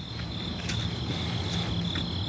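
Crickets chirping in a steady, high, slightly pulsing trill.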